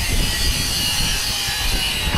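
Wind buffeting an open-air camera microphone: a rough, uneven rumble over a steady hiss.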